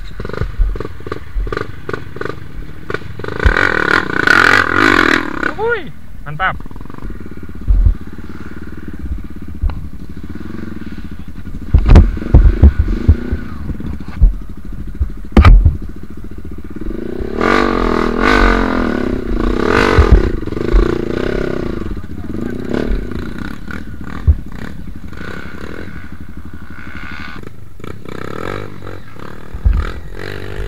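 Dirt bike engines revving in uneven bursts as the bikes are worked through mud and ruts. Sharp knocks and clatter punctuate the revving, the loudest about twelve and fifteen seconds in.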